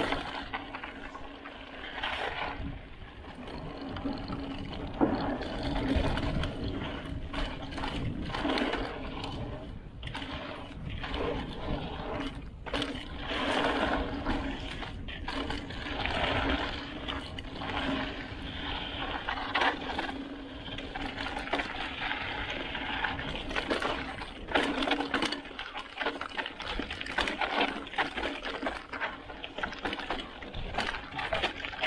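Specialized Enduro full-suspension mountain bike descending dirt singletrack: tyres rolling over dirt and loose stones, with irregular knocks and rattles from the bike over bumps and a steady rush of noise, as picked up by an action camera.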